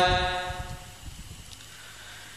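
The last chanted syllable of a Vietnamese Buddhist invocation dying away over the first second, then a pause with only faint low background noise.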